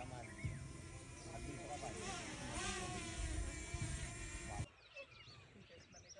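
Buzz of a small camera drone's propellers, its pitch wavering slightly, with faint voices under it. The buzz cuts off abruptly about four and a half seconds in, leaving quieter outdoor sound.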